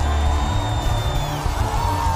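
Live worship band playing loud, with a deep steady bass and a held high note that lasts about a second and a half, then drops away.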